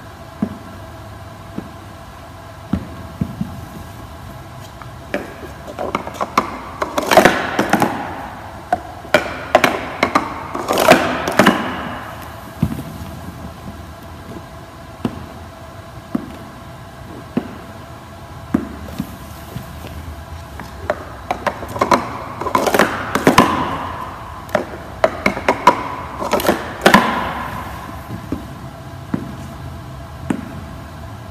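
Plastic stacking cups clicking and clattering as they are quickly stacked up into a pyramid and back down, in two bursts of several seconds each: one about six seconds in, the other about twenty-one seconds in. A faint steady tone runs underneath.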